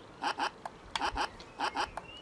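A circuit-bent 'No button' toy's speaker giving a stuttering string of short, clipped voice fragments. Its power comes through a flashing LED and a 150 ohm resistor in series with a 9-volt battery, and the LED cuts the supply too often for the toy to finish saying 'no'.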